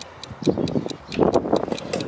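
Malco gutter outlet punch clicking in a quick run as its handle is squeezed over and over, driving the punch die down into the gutter before it breaks through.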